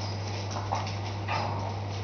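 Steady low electrical hum, such as aquarium pump or lighting equipment on mains power makes, over a faint hiss. Two brief, faint squeaky sounds come about half a second apart, a little after the start and again a little before the end.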